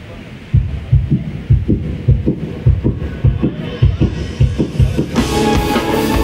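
Live band starting a song: a low kick-drum beat, two hits roughly every 0.6 seconds, plays alone for about four and a half seconds. Then the full band comes in near the end, with cymbals, keyboards and guitar.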